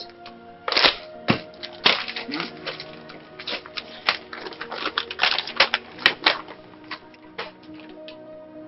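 Paper crackling and rustling in irregular sharp bursts as an envelope is torn open and a letter unfolded, over background music with sustained tones.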